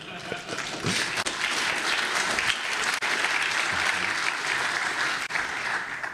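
Audience applauding in a hall, dying away near the end.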